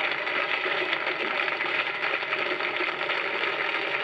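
Studio audience applauding steadily, on old television archive sound.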